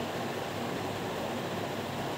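Steady hiss of room tone from a running ceiling fan.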